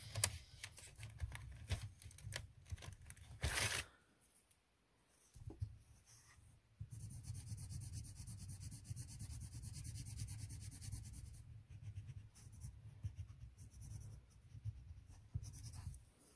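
Spektrum Noir Colour Blend coloured pencil scratching on paper in quick strokes, filling in a colour-chart swatch. The strokes stop for about two seconds after four seconds in, then resume as a steady scratchy hiss of shading before tapering into lighter strokes.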